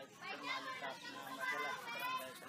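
Only speech: a man talking in a Philippine language.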